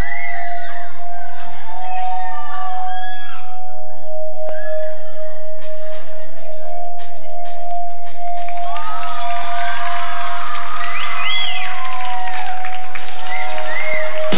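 A single held synthesizer note as a music intro, with a studio audience screaming and cheering over it. The note drops slightly in pitch near the end, just before the drums come in.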